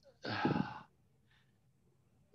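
A man's single heavy sigh, a breathy exhale with a little voice in it, lasting just over half a second, followed by a faint breath.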